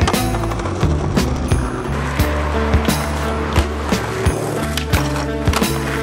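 Skateboard wheels rolling on pavement with the clacks of the board popping and landing tricks, mixed with background music.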